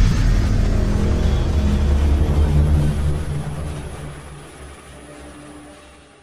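Cinematic logo-animation sound effect: a deep, rumbling drone with low sustained tones that holds for about three seconds and then fades away toward the end.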